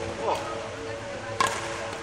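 A badminton racket strikes a shuttlecock once, a sharp crack a little after halfway. A brief shoe squeak on the court floor comes earlier.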